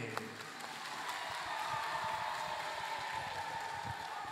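An audience applauding a speaker at the close of his talk. The clapping builds up about half a second in and then holds steady.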